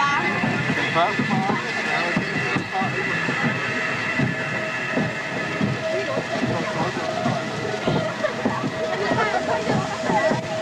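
Roller coaster train being hauled up the lift hill: a continuous rapid clatter from the lift and the wheels on the track. A steady hum joins in from about four seconds in.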